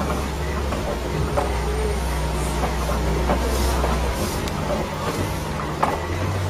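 Safari ride truck running along a dirt track: a steady low engine drone under road noise, with a few faint knocks. The low drone drops away about four seconds in.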